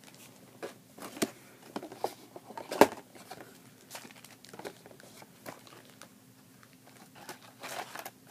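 Crinkling and crackling of a small plastic-foil lens-cleaning wipe packet being handled in the hands, with scattered sharp crackles, the loudest a little under three seconds in.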